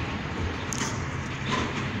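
Steady low rumble under an even outdoor background noise, like a motor running some way off.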